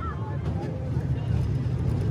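Roller coaster train rumbling along its steel track as it heads into the brakes, heard from on board, a low steady rumble that grows gradually louder.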